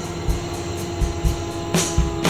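Stoner rock band playing: drum hits under a held electric guitar note and bass, with a cymbal crash near the end.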